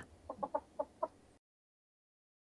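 A hen clucking quietly: four short clucks about a quarter second apart.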